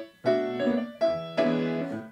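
Piano accompaniment playing a short fill between sung phrases, several chords struck in turn and left to ring.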